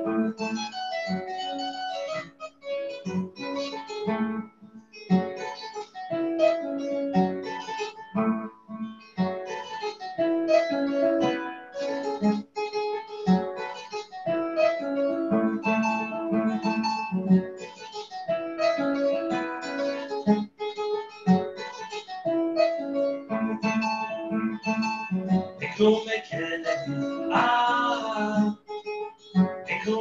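Kora, the West African harp, played solo: quick plucked-string patterns of ringing notes over a repeating bass line.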